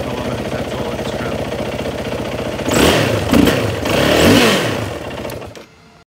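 Yamaha WR450's freshly rebuilt single-cylinder four-stroke engine idling, then blipped twice, revving up and falling back each time, before it stops near the end.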